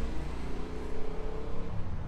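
Street traffic: a motor vehicle engine running over a low rumble, its pitch rising slightly as it goes.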